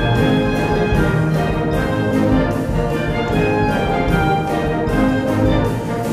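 Symphonic wind band playing a Latin-style arrangement: brass and saxophones holding chords and lines over a steady percussion beat.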